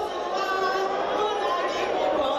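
Many women's voices together, singing and calling out over one another without a break.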